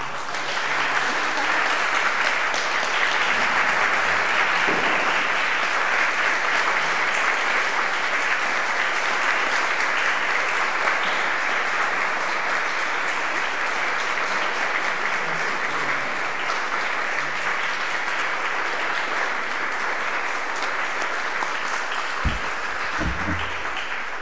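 Audience applauding steadily in a large hall, with a few low thumps near the end.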